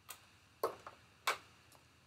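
Three sharp clicks, about half a second apart, from handling at a sewing machine just after a seam has been sewn; the machine itself is not running.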